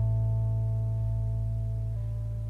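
A folk string band's last chord ringing out and slowly fading, with a deep bass note beneath the higher plucked and bowed strings. The band is mountain dulcimer, bass, guitar, lap steel, violin and mandolin.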